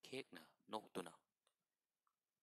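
A voice reading aloud in Manipuri for about a second, then a single faint click and silence.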